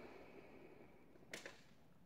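Near silence: room tone, with one brief click about one and a half seconds in.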